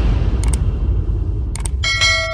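Subscribe-button animation sound effects over the fading deep bass of electronic outro music: two quick double mouse clicks, about half a second and a second and a half in, then a bell-like notification chime starting near the end.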